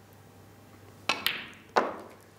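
Snooker shot: the cue tip strikes the cue ball about a second in, and about two-thirds of a second later the cue ball hits an object ball with a sharp click.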